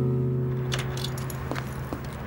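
A strummed acoustic guitar chord ringing out and fading away, then several light metallic clicks and jingles of keys and a door handle as a front door is opened.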